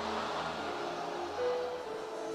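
Soft background music of held keyboard chords, sustained notes changing about halfway through, under a faint hiss.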